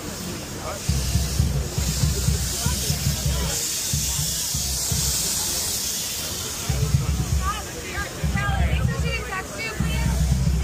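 Wind buffeting the phone's microphone in gusts, over the chatter of a crowd walking past; voices close by grow clearer near the end.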